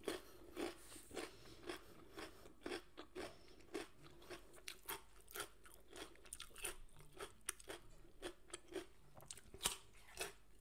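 Close-up mouth sounds of a person chewing a crisp raw white vegetable slice, with short crunches about two a second and a few louder ones near the end.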